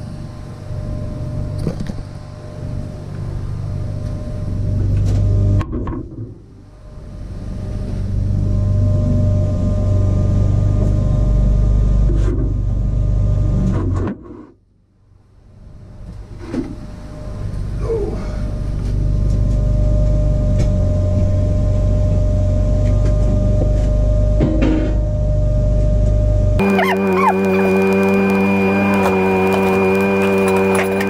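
MIG welder running on steel plate, a steady electrical hum and buzz, broken by a short stop about six seconds in and a longer one around the middle. Music takes over in the last few seconds.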